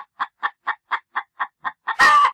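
Chicken clucking in a quick, even series of short clucks, about four or five a second.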